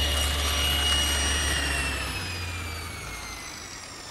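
Table saw running steadily, then switched off and winding down, its whine falling in pitch and fading from about two seconds in.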